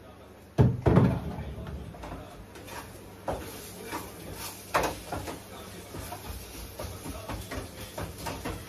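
Kitchen handling clatter: a loud knock with a deep thud about half a second in, then scattered lighter knocks and taps every half second or so.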